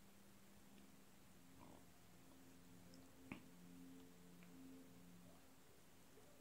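Near silence: room tone while the sauce is tasted, with one faint click about halfway through and faint low tones coming and going.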